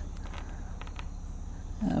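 A few faint ticks and light scrapes of a utility knife blade cutting slowly into the soft rubber housing of a USB-C audio adapter, mostly in the first second, over a steady low hum.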